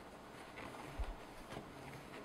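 Faint rubbing and handling noise from a drum wipe being worked over a laser printer's plastic drum unit, with a single low thump about a second in.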